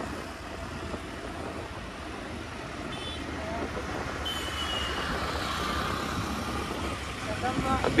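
Suzuki Access 125 scooter under way, its small single-cylinder engine running under steady road and wind noise as it slows, on the last of its petrol. A few faint, brief high tones from traffic come through in the middle.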